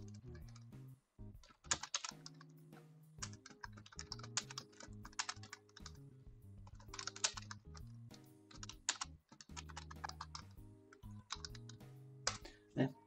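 Typing on a computer keyboard in quick bursts of keystrokes with short pauses between them, over soft background music with low held notes.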